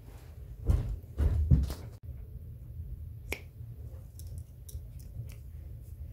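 Metal leatherworking hand tools being picked up and handled on a workbench: a couple of heavier knocks in the first two seconds, then a single sharp click and a few light ticks.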